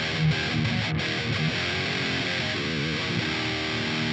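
Electric guitar played through the Otto Audio 1111 amp-sim plugin's default preset in mono, with its stereo doubling switched off and the gain at seven. It is a dry, heavy, high-gain distorted riff: low notes repeated in the first second and a half, then held notes that waver about three seconds in.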